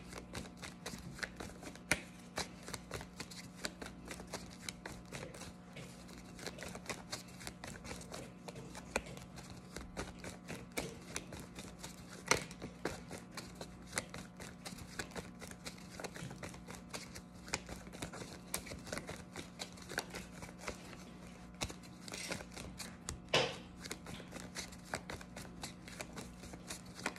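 A tarot deck shuffled overhand from hand to hand: a continuous run of soft card flicks and taps, several a second, with a few louder slaps. A low steady hum lies underneath.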